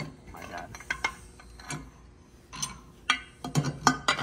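Light metallic clinks and knocks of metal motorcycle parts being handled by hand: scattered sharp taps, a few louder ones near the end.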